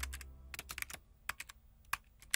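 Keyboard typing sound effect: a run of quick, irregular key clicks. The tail of a sustained musical tone fades away under the first half second.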